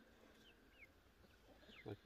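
Near silence, with a few faint, short falling chirps of a small bird in the background.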